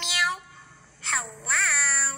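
A short high-pitched exclamation that ends about half a second in, then a long, high, meow-like cry lasting about a second whose pitch dips, rises and falls again.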